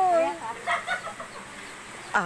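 A chicken clucking: a held, wavering call at the start, then a few short calls within the first second, fading after that.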